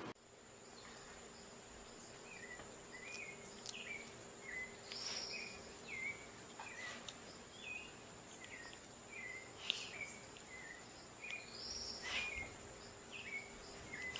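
Faint short chirps, repeated once or twice a second at uneven spacing, over a steady thin high tone and a low hum.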